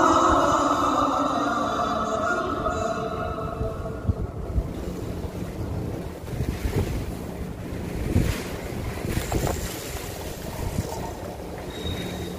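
The imam's chanted Qur'an recitation ends on a long held note that fades into the mosque's echo over the first few seconds. Then a steady low rumble of the crowded prayer hall remains, with scattered rustles and bumps.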